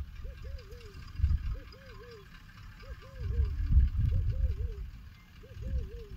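A bird's warbling call of two or three notes, repeating about once a second, over irregular low rumbles that swell and fade.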